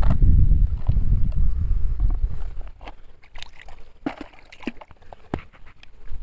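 Shallow river water sloshing as toys are handled in it, with a heavy low rumble for the first two seconds or so. After that it is quieter, with scattered knocks and clicks of plastic toy vehicles being picked up and set down.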